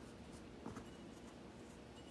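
Faint rustle of fabric mask pieces being handled and moved on a tabletop, with one brief soft brushing sound under a second in.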